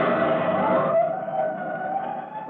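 Fire-engine siren sound effect winding up in pitch over about the first second, then holding a steady wail, over the end of the closing music.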